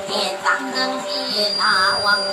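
Maranao dayunday performance: a voice singing over steady instrumental accompaniment, with a long bending sung note near the end.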